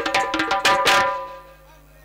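Dhol barrel drum played in a quick run of strokes with ringing tones, stopping about one and a half seconds in.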